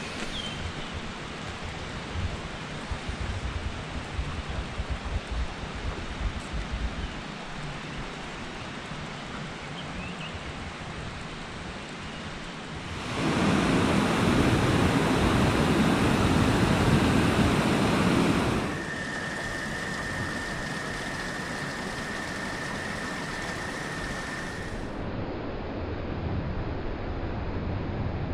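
A small cascade pouring over a stone weir into a rocky mountain stream: a loud, even rush for about five seconds in the middle. Before it there is a quieter outdoor hush with low gusts of wind on the microphone. After it comes a steady high-pitched tone over a faint hiss.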